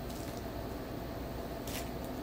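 Faint crisp crunches of a Kit Kat wafer bar being bitten and chewed, with one clearer crunch near the end, over a steady low room hum.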